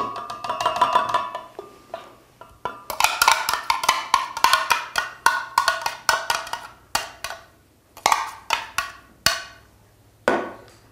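A spoon knocking and scraping against a container as coconut milk is emptied into a glass blender jar: a brief ringing pour or scrape, then a quick run of sharp, ringing taps, and a few more knocks near the end.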